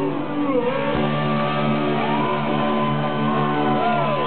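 Rock band playing live, electric guitar prominent, with notes bending up and down in pitch.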